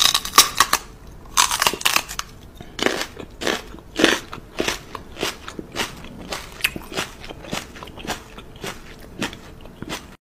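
Close-up crisp crunching and chewing mouth sounds, a sharp crunch roughly every half second, from a woman and a small dog nibbling at each other's lips.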